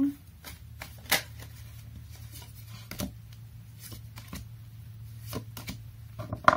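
A tarot deck being shuffled by hand: scattered sharp snaps and taps of cards, roughly a second apart, over a steady low hum.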